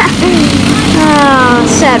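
Several Briggs & Stratton LO206 single-cylinder four-stroke kart engines running around the track, a steady drone.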